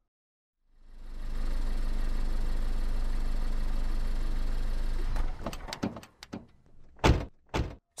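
Car engine running steadily, fading in about a second in and stopping about five seconds in. A scatter of clicks and two loud thunks follow near the end, typical of car doors opening and shutting.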